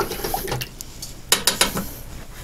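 A few short clicks and light knocks about one and a half seconds in, from small objects being handled on a work surface.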